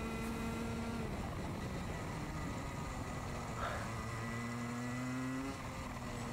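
Rotax two-stroke kart engine heard on board at race pace. Its pitch holds steady, drops about a second in, climbs again from about four seconds and falls back shortly before the end as the throttle comes and goes through the corners.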